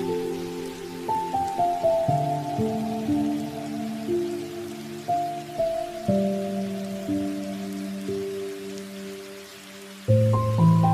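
Soft, slow background music of held keyboard notes, each struck and left to fade, over a steady sound of falling rain.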